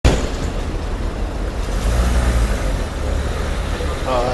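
Steady low rumble of a van-style taxi's engine as it draws up close, over general traffic.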